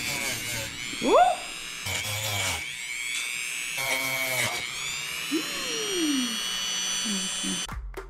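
Dremel rotary tool with a 60-grit sanding drum grinding the edge of craft foam. It gives a high, steady whine whose pitch sags and recovers several times as the drum is worked along the foam.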